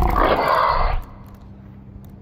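A fallen skateboarder groaning loudly in pain for about a second, cutting off abruptly.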